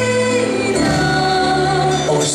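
Christian worship song with singing, the notes held long.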